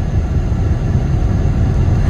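A car's steady low rumble heard from inside the cabin as it idles in a queue.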